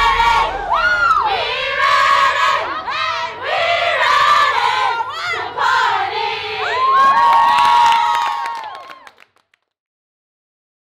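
A group of young women shouting and cheering together in a team cheer, with hand clapping; the voices fade out near the end.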